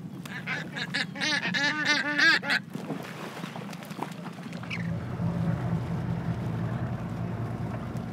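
Seabirds flocking over a fishing boat, giving a quick run of calls between about one and three seconds in. From about halfway, a boat engine runs with a low, steady hum.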